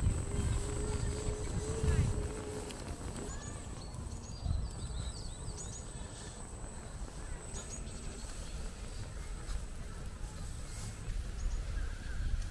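Wind buffeting the microphone over outdoor street background, with a few short, high bird chirps in the middle.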